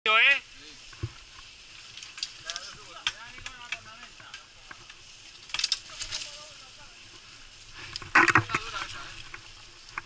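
Mountain bike rolling down a dirt trail: a steady hiss of tyres on loose dirt and gravel with scattered clicks and rattles from the bike over bumps, and a louder rattling stretch about eight seconds in.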